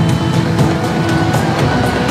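Promotional soundtrack music with a steady beat, with a car sound effect mixed in.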